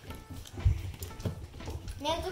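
A Boston terrier puppy's feet tapping and thudding on a wooden floor as it moves about and jumps up, a few dull thumps, the loudest just under a second in.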